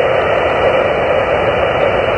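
Xiegu G90 HF transceiver receiving on the 15-meter band in single sideband: its speaker gives a steady, even hiss of band noise with no station heard answering the CQ call.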